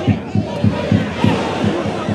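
Football stadium crowd noise during open play, with a fast, even low beat running under it about six or seven times a second.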